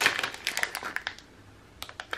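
Thin plastic bag around a wax melt crinkling as it is handled, for about a second, with a single faint click near the end.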